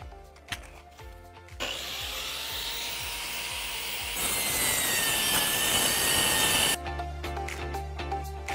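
Sliding mitre saw running up with a rising whine, then its blade cutting through a hollow composite decking plank, louder and hissier for the last couple of seconds before the sound cuts off suddenly.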